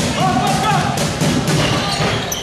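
Music playing in the hall, with a held, slightly wavering voice note about a quarter of a second in, and a few dull thuds over it.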